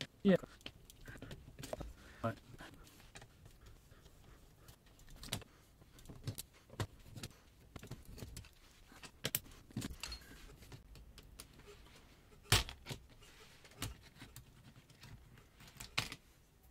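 Scattered light clicks, taps and small clinks of a screwdriver and small parts against the plastic case and circuit board of a Yamaha Tenori-On being taken apart, with a sharper tap a little past the middle.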